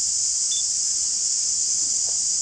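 Steady, high-pitched chorus of insects buzzing without a break.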